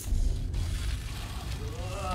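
A low rumbling drone from a horror cartoon's soundtrack. It starts suddenly and holds steady, with a faint voice coming in near the end.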